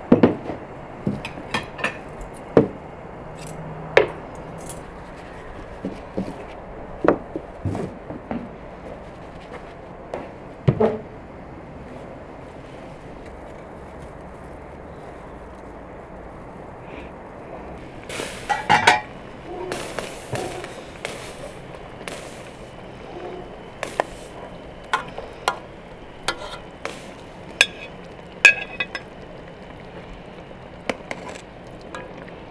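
Scattered clinks and light knocks of china plates, glasses and cutlery being set down on a cloth-covered table, with a quieter stretch in the middle and a denser run of clatter later on.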